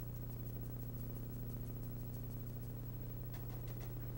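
Soft dabbing of a small paintbrush stippling oil stain onto the base of a reproduction antler, with a few faint taps near the end, over a steady low hum.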